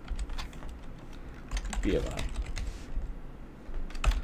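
Typing on a computer keyboard: a run of irregular key clicks as a short line of code is entered.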